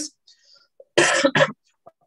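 A man coughs twice in quick succession, clearing his throat, about a second in.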